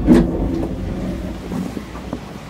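Cable-car cabin entering its station, heard from inside: a low rumble of the cabin's running gear with a sharp clunk just after the start, then the rumble slowly dying down, with a few light knocks near the end.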